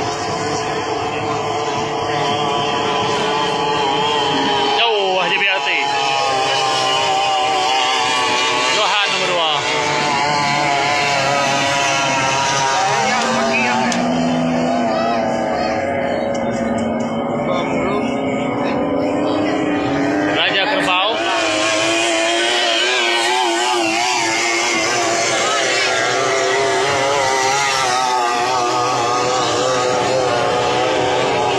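Several 30 hp three-cylinder racing outboard engines running flat out, their pitch wavering as the boats race along the river. Midway, one engine note climbs slowly for several seconds.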